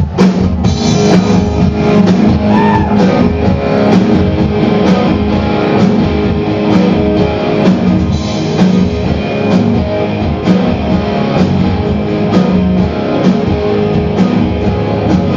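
Live punk rock band playing loud electric guitars over a drum kit, with a steady beat of drum hits; the song kicks in abruptly at the very start.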